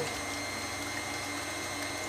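KitchenAid Artisan stand mixer running at a steady speed with an even motor whine, beating lemon-bar filling in its stainless steel bowl.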